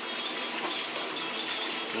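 Steady background room noise, an even hiss-like haze with no distinct sound standing out.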